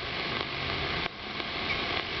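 Hiss and static of the 160-metre AM band from a transceiver's speaker between transmissions, steady apart from a brief dip about a second in.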